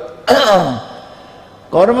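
Speech: a man talking, one short utterance with falling pitch about a quarter second in, a pause, then the next words starting near the end.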